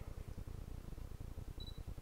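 Two short, high electronic beeps from a DSLR, the autofocus-confirmation signal as the lens locks focus: one about a second and a half in and another at the end, over a low rumble.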